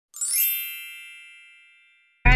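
A single bright, bell-like chime that swells in and then rings out, fading away over about a second and a half.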